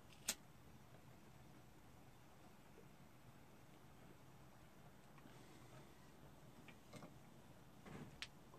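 A pipe smoker's lighter struck once, a single sharp click, while he lights the pipe. Near silence follows, with a few faint ticks.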